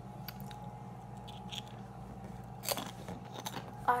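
Crunchy chips being bitten and chewed close to the microphone: scattered short crunches, the loudest about two-thirds of the way in, over a steady low hum.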